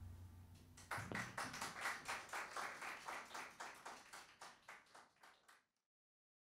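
The last ring of a band's final chord dies away, then faint hand clapping starts about a second in, about four claps a second, fading out within five seconds.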